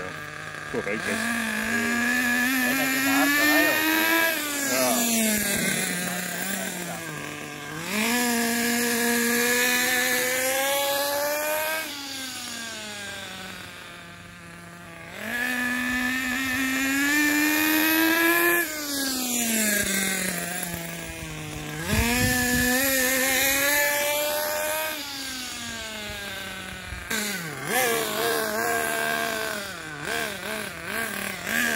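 Hobao Hyper 7 nitro buggy's small glow-fuel engine revving, its pitch climbing, holding, then falling away about four times as the buggy runs up and down the road. It is being run in on a break-in tank at no more than three-quarter throttle.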